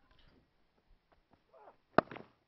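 Quiet cricket-ground ambience with faint scattered ticks, then a single sharp crack of a bat striking the ball at the very end.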